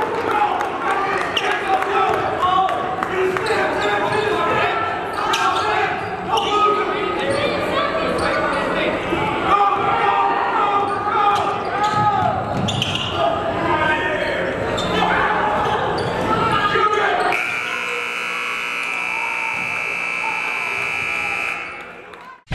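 Basketball game in an echoing gym: a ball bouncing on the hardwood and shouting voices, then a steady scoreboard buzzer that sounds for about four seconds and cuts off near the end.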